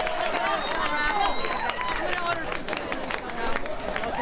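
Crowd of people talking over one another in a bar, several voices at once, with a few scattered claps.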